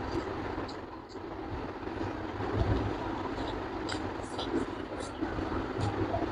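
Close-up mukbang eating: chewing and wet mouth smacks, heard as scattered short, sharp clicks over a steady low rumble.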